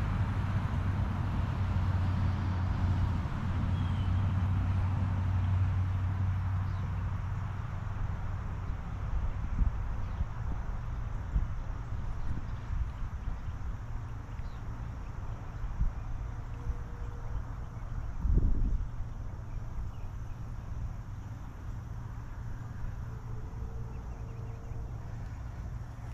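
Steady low rumble of outdoor background noise, heaviest in the first several seconds, with a single thud about eighteen seconds in.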